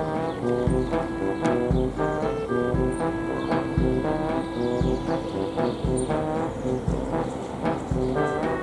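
Background music in a light, comic silent-film style: a brass-toned melody over a regular low beat about once a second.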